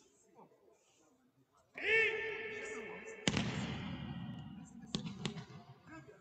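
A loud voiced call rings out for about a second and a half. A sharp slap follows as a judoka's body goes down onto the tatami, then two more sharp knocks near the end.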